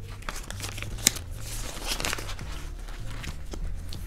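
Clear plastic zip envelopes and paper banknotes rustling and crinkling as they are handled, with scattered light clicks and one sharper click about a second in.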